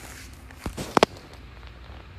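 Three sharp knocks about half a second to a second in, the last two close together and the loudest.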